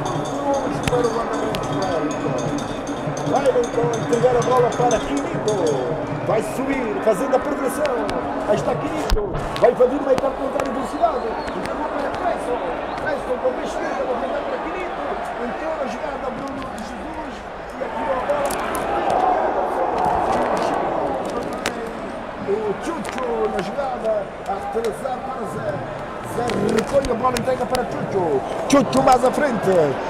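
Voices with music under them, the music clearest in the first several seconds, and a broad swell of noise about two-thirds of the way through.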